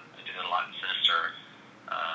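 Speech only: a man talking in short phrases with a pause, the voice thin and narrow like audio over a phone line.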